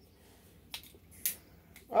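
A cigarette lighter flicked: a small click, then a short rasping strike about half a second later.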